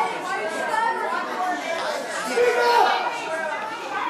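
Voices talking over one another in low, unclear chatter, off the microphones.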